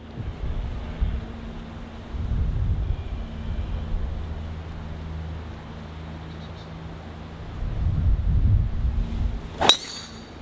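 Low wind rumble on the microphone, then near the end a single loud, sharp crack of a driver's clubhead striking a golf ball off the tee at full tour-pro swing speed.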